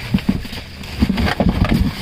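Rummaging by hand in a deep cardboard box: a black drawstring bag and loose plastic items being pushed aside, with irregular rustles, scrapes and dull knocks against the cardboard.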